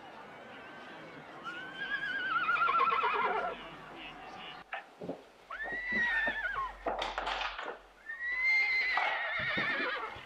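Horse whinnying three times, long wavering calls that rise and fall, with scattered knocks between them.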